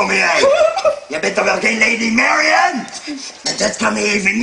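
A performer singing, with long held notes.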